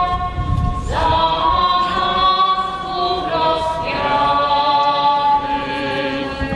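A group of voices singing a slow hymn together, long notes held for about a second each before moving to the next.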